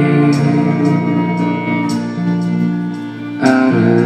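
Electric guitar and bowed violin playing an instrumental passage together, with sustained notes; the sound thins out a little past three seconds and comes back in louder just before the end.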